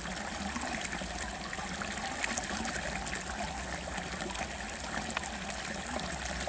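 Water gushing steadily out of a pipe outlet in a mud bank and splashing into a pool, a constant even rush of pouring water.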